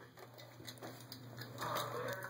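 A dog rummaging with its head inside a clothes dryer drum: faint, scattered light clicks and soft rustling.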